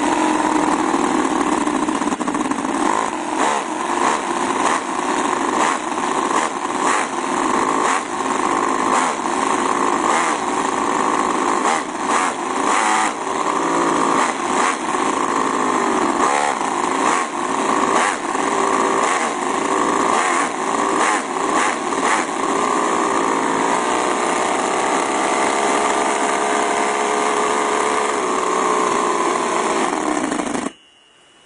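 Conley quarter-scale 50cc four-stroke V8 model engine, glow-plug fired on nitromethane fuel, running loud and fast. It is revved up and down several times, then holds a steadier speed for the last several seconds.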